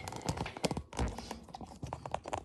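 Handling noise: a quick, irregular run of taps, knocks and light crinkles as cellophane-packed clear stamp sets are laid out on a wooden desk and the camera is set in place over them.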